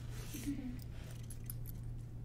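Faint handling noise from a large crystal specimen being lifted: a few light clicks and rustles over a steady low hum.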